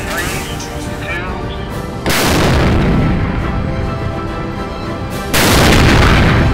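Two cannon shots from self-propelled howitzers firing hypervelocity projectiles, about three seconds apart, each a sudden loud blast followed by a long rolling rumble.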